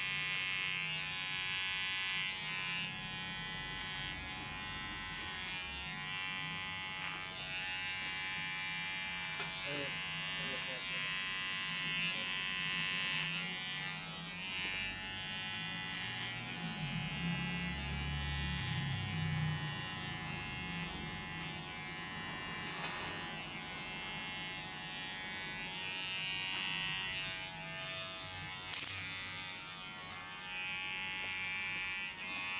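Cordless electric beard trimmer buzzing steadily as it cuts along a man's cheek and beard. One sharp click comes near the end.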